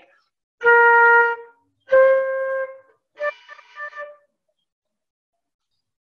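Concert flute playing three single notes in a rising step, B, C, then D, each held about a second with short gaps between; the last note is broken into a few short tongued notes. Heard over a video call.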